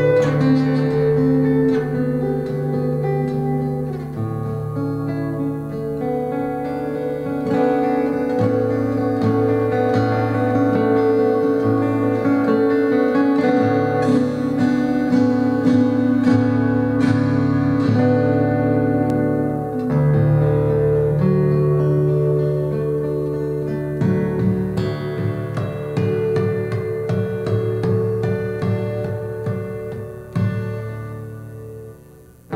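Solo steel-string acoustic guitar played fingerstyle in double drop D tuning, both outer E strings tuned down to D: deep bass notes ring under a picked melody. The playing thins out near the end, closing the piece.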